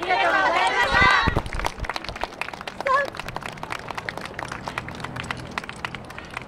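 Many voices shout together for about a second and a half, the yosakoi dancers' closing call as their performance ends. After that come sparse light taps and one short single call about three seconds in.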